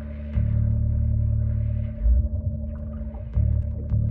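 A video's soundtrack playing back on the computer through DTS Headphone:X effect processing: a low, droning rumble with a steady hum tone and soft rising-and-falling swells above it. The bass jumps louder about a third of a second in, dips about two seconds in, and comes back up past three seconds.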